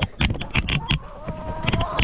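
Chickens clucking close by, mixed with several short sharp knocks. About halfway through a long, steady held call begins.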